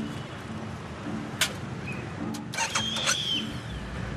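Steady low engine rumble of motor vehicles on a city street, with a few sharp clicks and a brief high squeal about three seconds in.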